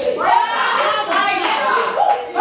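Hands clapping in a church congregation, with a woman's voice carrying over the claps.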